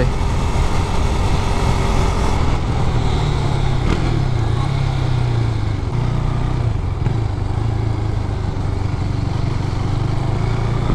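Husqvarna Svartpilen 401's single-cylinder four-stroke engine running steadily on the road, with wind noise over the microphone. About four seconds in the engine note drops briefly and comes back up.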